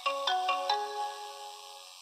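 A short chiming jingle: four bell-like notes struck in quick succession, the second one lower, then ringing on and fading away.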